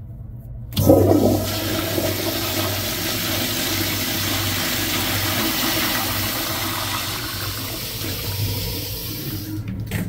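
Flushometer-valve toilet flushing. A sudden rush of water comes about a second in, then a strong steady flow for several seconds, easing off and stopping just before the end.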